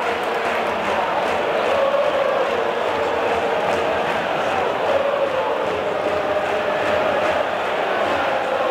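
Football supporters in a stadium stand singing a chant together, many voices in unison, steady and loud throughout.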